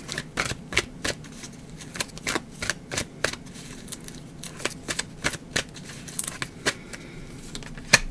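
A deck of tarot cards shuffled by hand: a run of quick, uneven card clicks and riffles, several a second, with a sharper snap near the end as a card is drawn.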